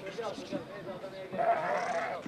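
Sheep bleating in a crowded pen, with one loud, long bleat near the end.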